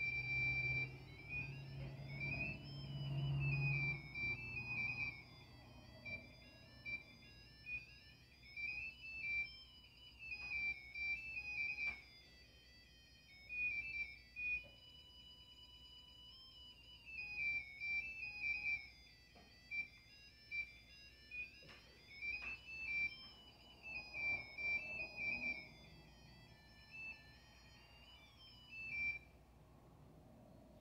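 A small handheld electronic gadget beeping out a fast, wandering tune of high electronic notes with sliding pitches, stopping shortly before the end.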